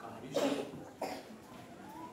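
A person coughing: a strong cough about half a second in and a shorter one about a second in.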